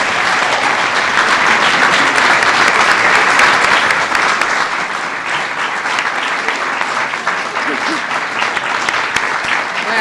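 A roomful of people applauding, building quickly, loudest a few seconds in, then easing off a little and carrying on.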